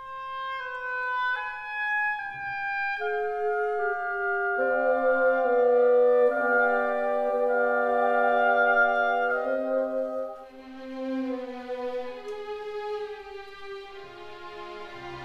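Instrumental background music: a slow melody of long held notes that builds into a fuller chord, then thins and drops back about ten seconds in.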